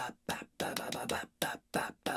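A man voicing a rhythm with short, breathy, whispered syllables, spaced unevenly like a syncopated beat, a few of them briefly voiced.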